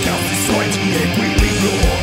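Symphonic black metal music: distorted electric guitars playing over drums, loud and dense.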